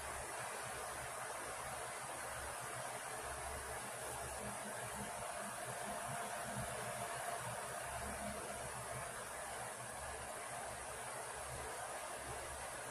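Steady background hiss of room tone, with no distinct sounds from the work.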